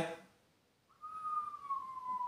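A person whistling one long note that slides slowly downward, a falling whistle that mimics a plunge or collapse.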